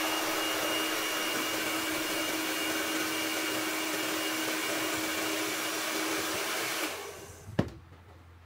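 Hand-held hair dryer running steadily, a blowing whoosh with a steady hum, then switched off about seven seconds in and winding down quickly, followed by a single sharp click.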